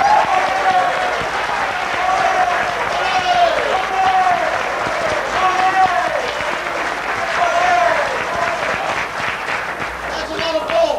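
An audience applauding in a hall, with voices calling out over the clapping.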